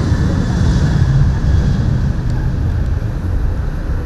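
Ethiopian Airlines Boeing 737's twin jet engines at takeoff power as the airliner rolls down the runway and lifts off: loud, steady engine noise with a heavy low rumble.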